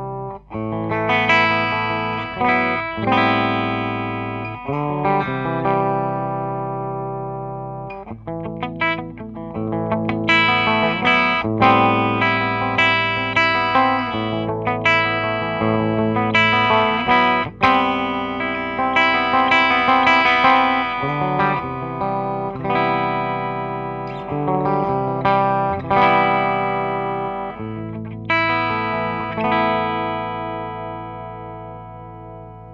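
2017 Gibson Les Paul Faded T electric guitar with humbucker pickups, played through the clean channel of a Fender Supersonic 22 valve amp. Ringing chords and picked notes let ring, with a brief break about halfway through.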